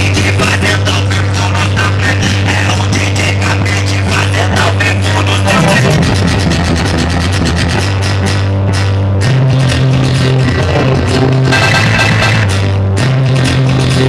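Loud electronic dance music played by a DJ through a big speaker wall, with a fast beat over a long held bass note that steps to a new pitch every few seconds.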